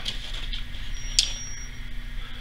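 A low steady hum, with one sharp tick a little over a second in that leaves a brief, thin, high ringing tone.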